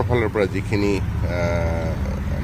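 A single drawn-out call with a steady, unwavering pitch, lasting about a second, following a few words of a man's speech over a steady low hum.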